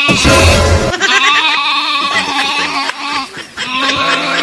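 A sheep bleating loudly and repeatedly, in long wavering calls.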